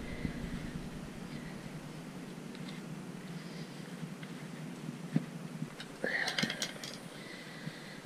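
Quiet handling of heat-wrap tape as gloved hands tuck and pull it around a motorcycle exhaust header pipe, with a few faint clicks and rustles about five and six seconds in over a steady hiss. A brief whisper-like mutter comes about six seconds in.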